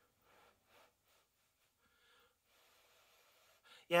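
A man blowing on a hot forkful of food to cool it: a few faint breathy puffs, with a short breath in just before he speaks near the end.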